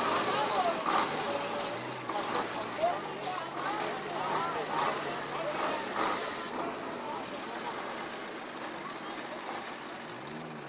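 A KamAZ heavy truck's diesel engine running with a steady low hum, with several people talking over it. The hum fades after about six seconds while the voices carry on.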